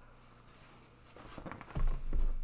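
Handling noise from a hand moving over a wooden desk beside a sheet of paper: a scraping rustle in the second half, then a dull thump near the end.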